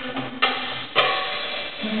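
Live music: darbuka hand drum with a drum kit, two sharp strokes about half a second apart, under a held melody note that steps to a new pitch near the end.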